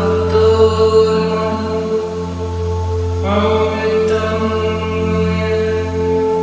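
Tibetan singing bowls ringing in a steady drone under a woman's chanted mantra. She holds long sustained notes, and a new note begins about three seconds in.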